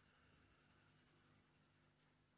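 Near silence with the faint scratching of a stylus drawing strokes on a pen-display screen.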